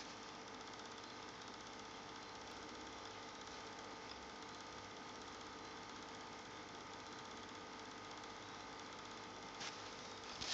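Faint steady hum with hiss, carrying a few thin steady tones, unbroken and without any sudden sounds.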